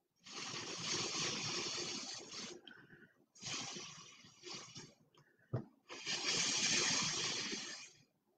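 Air blown hard through a drinking straw onto wet acrylic paint in three long breaths, each a steady hiss, the middle one trailing off. A brief thump comes just before the third breath.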